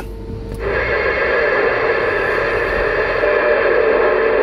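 Uniden Grant LT CB radio's speaker putting out steady radio static from about half a second in: an open channel hissing between transmissions, with a faint steady tone underneath.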